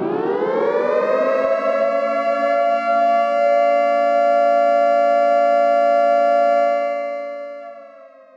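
Air-raid siren sound effect winding up, its pitch rising at the start, then holding a steady two-tone wail and fading out near the end as the pitch sags slightly.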